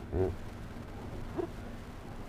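A man's brief "mm" at the start, then quiet room tone with only a faint blip.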